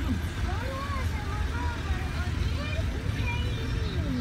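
Indistinct voice-like sounds with gliding pitch over a steady low rumble.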